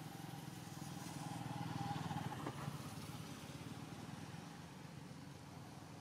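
Faint low engine hum, like a distant motor vehicle, swelling to its loudest about two seconds in and then fading away.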